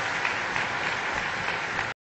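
Audience applauding steadily, many hands clapping at once; the applause cuts off suddenly near the end.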